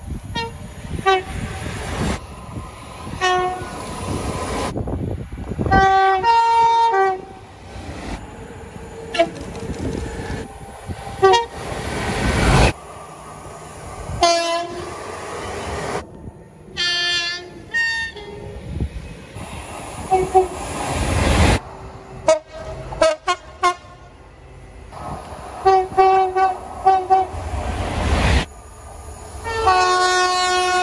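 Passing trains sounding two-tone horns in a rapid succession of short clips. Brief one- and two-note blasts come every few seconds, with the rumble of trains between them and abrupt cuts from clip to clip.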